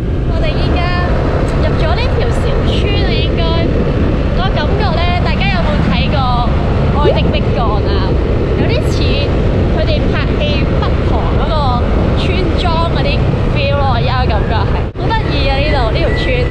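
Loud steady rush of wind and road noise on a moving motorbike, with a woman's voice talking over it; the noise drops away for a moment near the end.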